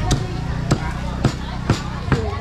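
A cleaver chopping meat on a thick round wooden chopping block, four sharp chops at roughly two a second.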